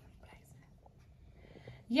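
Near silence with faint rustling from the garment being handled, then a woman starts speaking at the very end.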